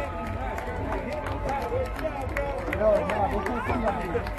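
Several spectators' voices talking over one another in the stands, with no single clear speaker, over a steady low rumble.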